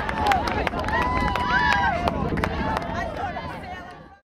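Excited high-pitched shouting and cheering of young players celebrating a goal, with a couple of long held shouts about a second in and scattered sharp claps, fading out near the end.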